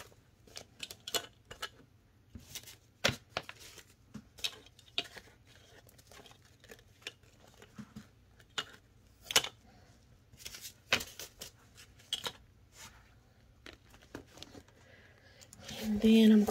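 Paper banknotes rustling and flicking as they are handled and set into a clear acrylic cash holder, with irregular light taps and clicks, a few louder ones near the middle.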